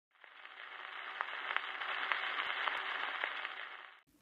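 Surface noise of a 78 rpm shellac record in its lead-in groove before the music: a faint steady hiss with scattered sharp clicks, fading up from silence and dropping away near the end.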